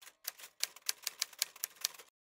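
Typewriter keys clacking: a quick, slightly uneven run of about ten sharp strikes in under two seconds, used as a title sound effect.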